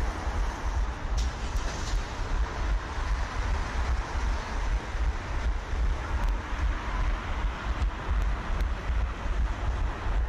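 Wind rushing over a head-mounted action camera's microphone as its wearer runs, with a steady thudding pulse about three times a second from the running strides, and road traffic underneath.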